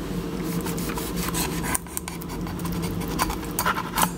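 Chef's knife cutting through a branzino's skin and flesh behind the head, a scratchy rasping scrape across the scales with a few light clicks along the way.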